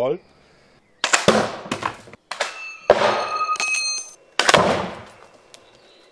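Slingshot shots of a 2.2-pound Cold Steel spear into a wooden wall: about five sharp bangs and thuds, one near the middle followed by a metallic ring that lasts about a second.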